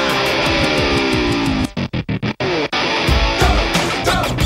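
Instrumental break in a pop-rock track with distorted electric guitar. A descending run leads into about a second of the music stuttering in and out in rapid cuts, and then the full band comes back in.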